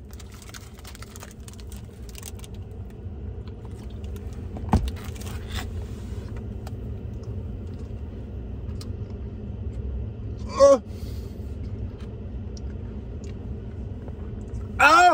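Steady low rumble inside a parked truck's cabin. One sharp knock comes about five seconds in, and a short muffled vocal sound comes from a man with a mouthful of frozen Sour Patch Kids a little past ten seconds.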